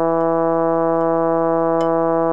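Synthesizer note-learning track playing the Bass I line of a mixed-choir piece: a single low, brass-like note held steady.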